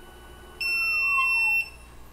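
Creality UW-01 wash and cure station beeping once, a steady high tone lasting about a second, to signal that its wash cycle is finished. A fainter whine slides down in pitch beneath the beep.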